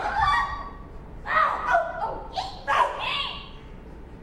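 A few short, high-pitched vocal cries from stage performers, bending in pitch and coming in bursts about a second apart, after which the sound grows quieter.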